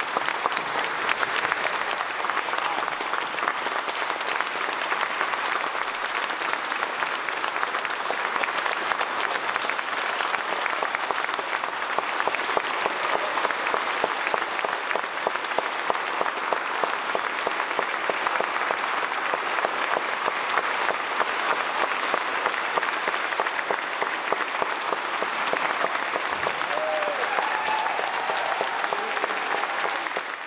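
Audience applauding: a large crowd clapping steadily and densely, with a voice or two calling out near the end.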